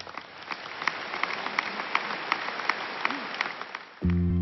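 Audience applauding: many hands clapping, building over the first second and fading near the end.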